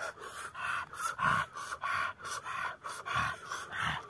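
A man laughing breathlessly in rapid, nearly voiceless huffs, about four a second.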